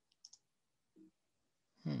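Three quick, soft clicks close together from computer controls being pressed, followed near the end by a hummed "hmm".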